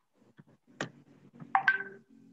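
A single sharp click, then a faint patter of low sounds and, in the last half second, a louder short electronic beep holding a steady tone.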